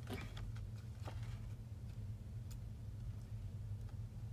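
A few faint ticks and light rustles of cardstock being handled and adjusted by hand, over a steady low hum.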